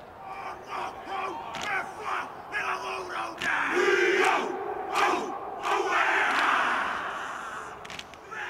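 All Blacks rugby team performing the Māori haka: shouted calls and massed chanted responses, punctuated by sharp slaps on chests and thighs, growing louder about halfway through.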